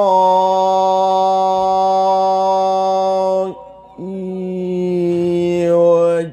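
A man's solo voice in melodic Quranic recitation, holding one long, steady note for about three and a half seconds. It breaks off briefly for a breath, then takes up a second long held note.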